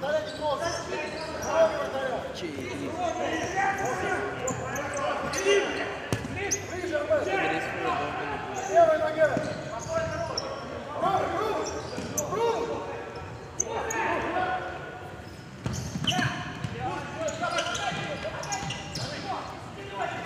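Futsal ball being kicked and passed on a hardwood indoor court, with sharp intermittent thuds, under players' voices calling out, echoing in a large sports hall.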